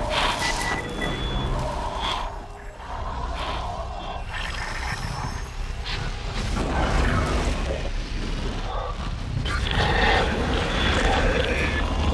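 Science-fiction film sound effects for a glowing energy barrier: a deep low rumble with electronic crackling and brief high tones, building a little louder near the end.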